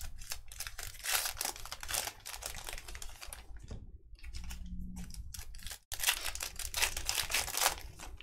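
Foil trading-card pack wrappers crinkling and tearing open, with cards being handled and slid against each other: a dense run of crackling about a second in and again over the last two seconds.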